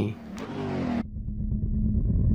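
Car-engine sound effect: a low rumble with a steady hum that starts suddenly about a second in.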